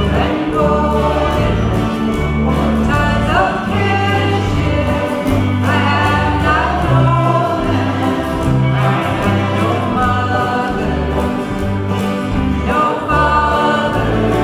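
A woman singing a folk song, accompanied by several strummed acoustic guitars.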